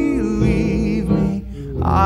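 Male vocalist singing a slow, crooning ballad line over an instrumental backing; the voice drops away briefly near the end before the next line begins.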